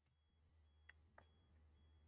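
Near silence: room tone with a faint low hum, a faint high tone pulsing on and off about twice a second, and two faint clicks about a second in.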